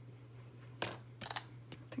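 A few sharp clicks and taps of a plastic marker and crayons being handled on a cutting mat: one clear click about a second in, then several lighter ones close together.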